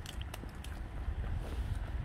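Footsteps on grass and dry fallen leaves, with a few light clicks and rustles early on, over a steady low wind rumble on the microphone.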